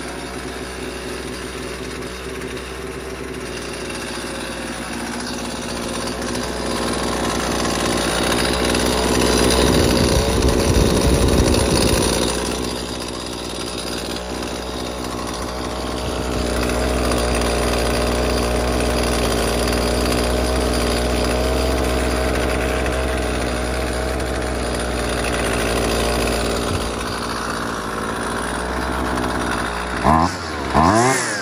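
Husqvarna 128LD string trimmer's small two-stroke engine running, revved up to a peak around ten seconds in, easing back at about twelve seconds, then held at a higher speed again for much of the rest. It is running steadily after a new spark plug and a carburetor tuning.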